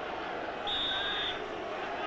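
Referee's whistle blown once, a short steady blast of about two-thirds of a second, signalling the penalty kick to be taken, over a steady background of stadium crowd noise.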